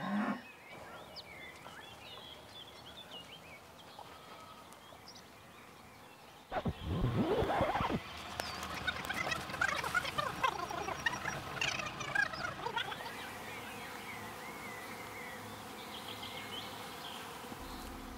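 Field ambience of birds and insects, faint at first. About six and a half seconds in there is a short, louder burst of noise. A busy stretch of many short chirping bird calls follows, then a steadier, quieter background.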